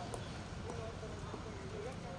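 Faint, distant voices of several people talking over a steady outdoor background hiss and low rumble, with a few light clicks.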